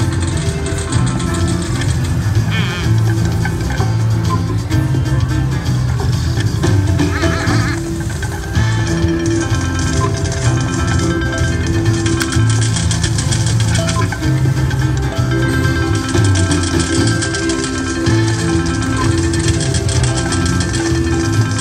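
Penny slot machine's free-spin bonus music: a looping melody that plays on through the bonus spins, with two brief warbling sound effects about two and a half and seven and a half seconds in.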